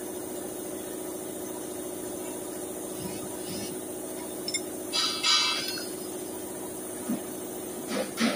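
Steady mechanical hum of a running machine, with a brief louder burst about five seconds in.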